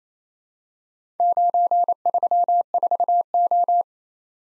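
Morse code at 28 words per minute, sent as a single steady electronic beep keyed into short and long elements. It starts about a second in and spells the group 9 3 4 0 in four quick clusters of dits and dahs.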